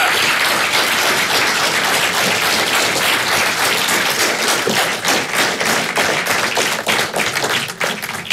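Audience applauding: many hands clapping at once, holding steady and then tailing off near the end.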